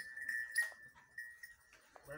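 A high, thin, steady call from an animal, held for nearly two seconds and fading near the end.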